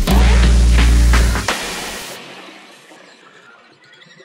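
Electronic intro music ending on a heavy sustained bass hit that stops about a second and a half in, leaving a hissing tail that fades out over the next two seconds.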